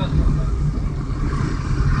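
A car's engine and road noise heard from inside the cabin while driving in town traffic: a steady low rumble.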